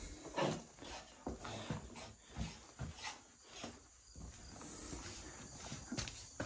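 Soft footsteps and scuffs on gritty concrete, a handful spaced unevenly over the first few seconds, then a faint steady background hiss.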